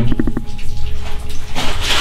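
Water trickling in a stream from a mine tunnel's ceiling; an even splashing hiss swells about one and a half seconds in, after a few quick clicks at the start.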